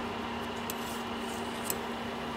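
Steady hum of a pot of water boiling over a high flame, with two faint clicks of a spoon against the pot as boiled glutinous-rice dumplings are scooped out.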